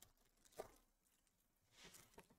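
Near silence, with faint handling of trading cards: two soft brief sounds, one about half a second in and one near the end.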